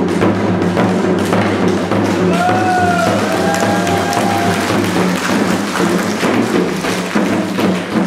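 Several janggu hourglass drums struck rapidly with sticks in an ensemble rhythm, over accompanying music. A held, sliding pitched tone sounds above the drumming from about two seconds in to past the middle.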